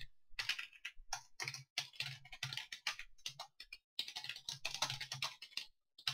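Computer keyboard typing in quick runs of keystrokes, broken by a few short pauses.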